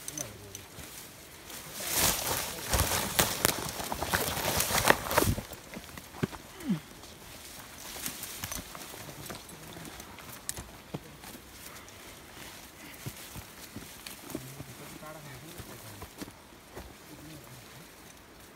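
Dry brush, twigs and leaves rustling and crackling as people push and scramble through dense scrub close by, loudest for about three seconds starting two seconds in, then lighter rustling and scattered snaps of footsteps in the undergrowth.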